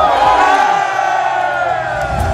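A group of footballers cheering and shouting together in one loud, held yell as the trophy is raised in celebration.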